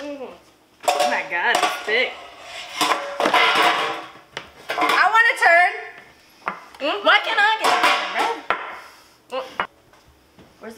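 Wire whisk clinking and scraping against a glass mixing bowl as batter is stirred. Muffled, wordless vocal sounds come and go over it.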